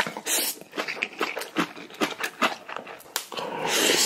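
Close-up slurping of spicy instant ramen noodles sucked through the lips, in a run of short quick pulls, then one long continuous slurp starting near the end.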